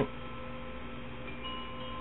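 Soft background music of sustained, ringing chime-like tones, with a new higher tone coming in about one and a half seconds in.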